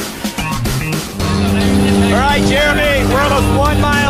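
Rock guitar music cuts off about a second in, giving way to the steady engine drone of a skydiving jump plane heard inside its cabin, with voices over it.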